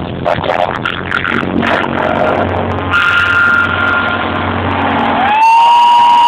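A live band playing, taped from the audience. Near the end the music cuts off abruptly and a louder, steady electronic beep-like tone takes over, sliding briefly upward as it starts.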